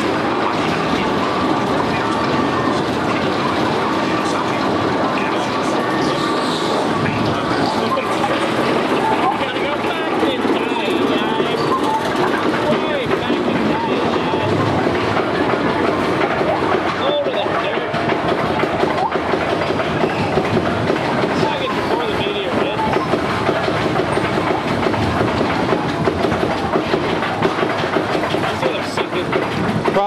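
Spinning wild-mouse roller-coaster car rolling along its steel track toward the chain lift, giving a steady loud rattle and clack of wheels on rail.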